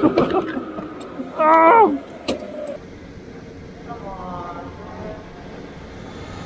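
Go-karts running on the track, with a brief shouted voice about a second and a half in.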